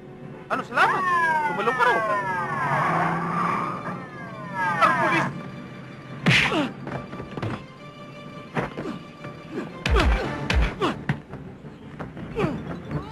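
Action-film soundtrack music with swooping, falling tones, broken by sharp hits, and two heavy low thuds about ten seconds in as men grapple at a bridge railing.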